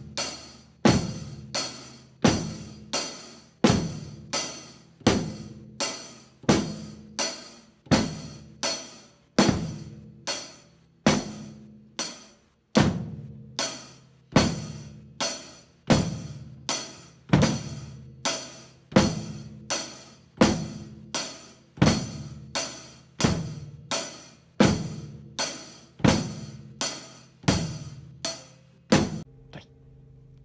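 Drum kit played by hand with sticks in a steady, even beat, a loud stroke about every three-quarters of a second, stopping shortly before the end.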